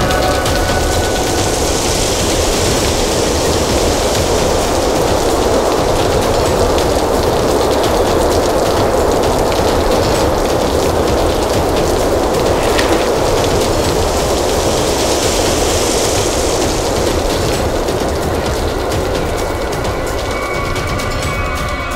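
Loud, steady rushing of a wind-storm sound effect, swelling in hiss twice, once near the start and once near the end.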